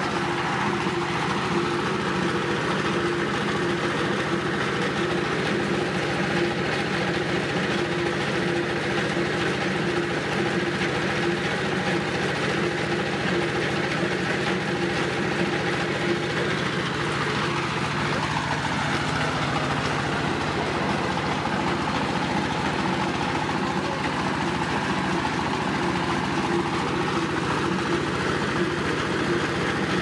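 Screw-type mustard oil expeller running under load, crushing seed and pushing out oil cake: a steady mechanical noise with a constant hum.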